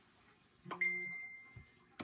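A light click followed by a single high ringing tone that fades over about a second.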